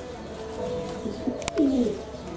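Domestic pigeons cooing: a low, drawn-out coo, then a sharp click about one and a half seconds in, followed by a short falling coo near the end.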